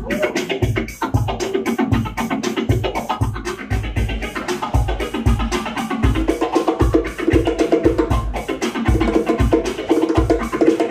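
Live band playing an instrumental passage: electric guitars and keyboard over a steady low beat of about two thumps a second, with hand-played bongos adding quick strokes.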